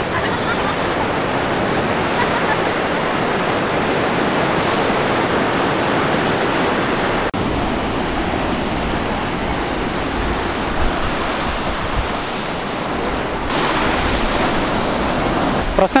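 Ocean surf breaking and washing on a sandy beach: a steady, even rush of waves.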